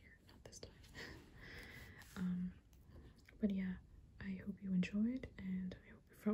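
Soft-spoken, partly whispered speech: breathy whispering at first, then short quiet spoken phrases.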